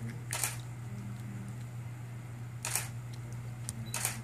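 Camera shutter firing twice, about two and a half seconds apart, each a short sharp click.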